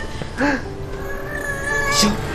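Baby crying: a short wail about half a second in, then a long, steady, high thin cry.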